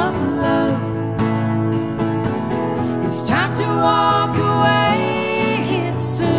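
Live acoustic folk-country song: two acoustic guitars played together under voices holding long sung notes, one of them swooping downward about halfway through.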